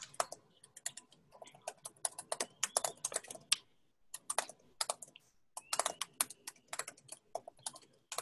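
Typing on a computer keyboard: a quick run of keystroke clicks, with a brief pause about halfway through.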